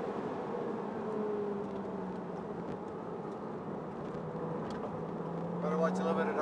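2011 Porsche Boxster Spyder's mid-mounted 3.4-litre flat-six heard from inside the car at a steady cruise on a winding road, over a constant rush of road and wind noise. The engine note sags a little, then rises gently near the end as the car picks up speed.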